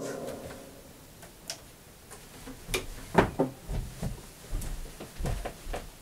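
Handling and movement noise: scattered knocks, clicks and low thuds as a person gets up from a chair and steps toward the camera with an acoustic guitar. They start about a second and a half in and come thicker from about halfway.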